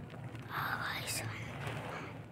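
A child whispering close to the phone's microphone, starting about half a second in, over a faint steady low hum.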